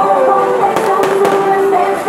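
Fireworks going off, with a few sharp cracks close together about a second in, over loud continuing stage music.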